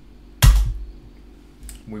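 One sharp computer-keyboard keystroke about half a second in, the Enter key running a terminal command, followed by a fainter click near the end.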